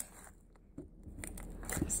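Homemade borax slime being kneaded and pressed by hand on a desk, giving faint small clicks and pops that start about a second in.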